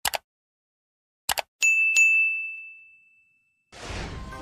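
Sound effects of a subscribe animation: a quick double mouse click at the start and another about a second later, then a bright bell ding struck twice that rings out and fades. Near the end comes a short rushing noise burst.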